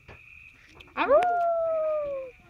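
A dog gives one drawn-out howl about a second in, rising sharply and then held while its pitch slowly sinks: an excited greeting howl.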